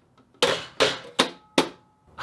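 Four sharp knocks, evenly spaced about 0.4 s apart, from a hand on the sheet-metal case of a Harbor Freight Titanium Easy-Flux 125 welder. Each knock dies away quickly, with a faint ring after the third.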